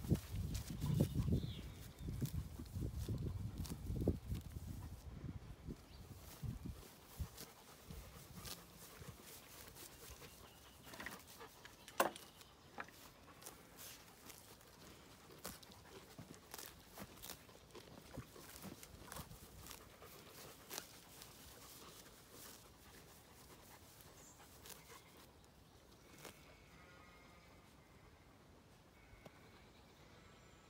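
A pony cropping grass: a long run of short, faint tearing clicks as it bites and pulls at the turf. The first several seconds are covered by a louder low rumble.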